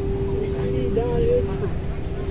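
Inside a passenger train carriage: a steady electrical hum holding one constant tone over a low rumble, with faint passenger voices about half a second to a second and a half in.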